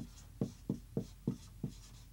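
Marker writing on a whiteboard: a quick run of short strokes, about three a second.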